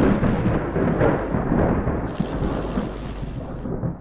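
Outro sound effect for an animated text reveal: a deep, noisy rumble that starts loud and fades over about four seconds.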